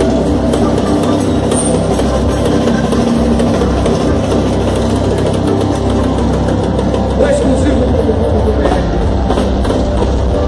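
A live band with electric guitar and drum kit playing loudly through a stage sound system, heard close on stage with a heavy bass rumble, and voices mixed in.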